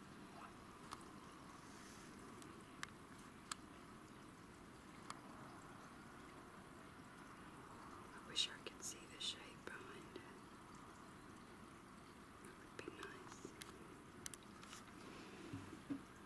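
Near silence: a faint steady hiss with a few scattered clicks, and a short cluster of sharper clicks about eight seconds in.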